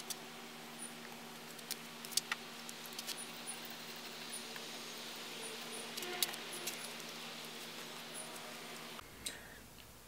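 Light clicks and clinks of hummingbird feeders being unhooked from their wire hangers, over a faint steady low hum and a few faint high chirps. The background drops quieter about nine seconds in.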